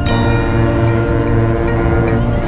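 Marching band holding a loud sustained chord, with the trumpet close by and a sharp percussion hit right at the start.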